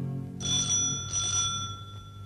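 A metal telephone bell ringing in two short bursts, each about half a second long, with one bell tone ringing on and fading after them.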